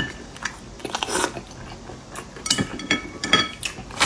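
Close-miked chewing with wet mouth clicks and smacks, in bursts about a second in and again from two and a half to three and a half seconds.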